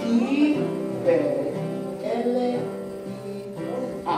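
Acoustic guitar strummed as the accompaniment to a sung children's song, with the voice spelling out letters ("B... I").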